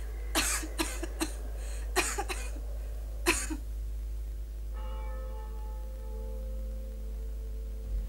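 A sick woman coughing, about six coughs in the first three and a half seconds. Then steady, held music notes sound until the end.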